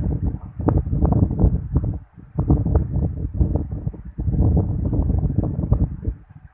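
Wind buffeting the microphone: a loud, low, ragged rumble in gusts, dropping out briefly about two seconds in and again about four seconds in.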